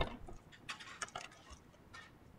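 A sharp knock, then a quick run of light clicks and ticks from a pencil being picked up and handled against the desk and paper.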